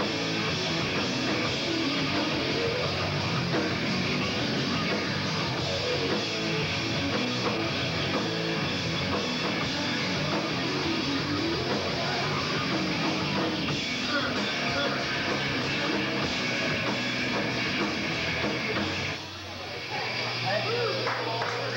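Live rock band playing with electric guitars and drums, at a steady level, dipping briefly near the end.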